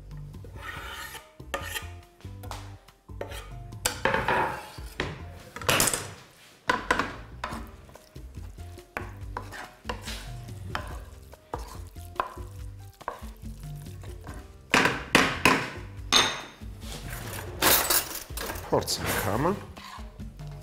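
Wooden spatula stirring and scraping chopped peppers and olives in a ceramic-coated frying pan, in irregular strokes that grow louder near the end. At the start, food is scraped off a wooden cutting board into the pan.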